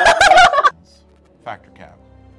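A girl's Chewbacca impression: a loud, warbling, gargled howl lasting about a second, then two short giggles.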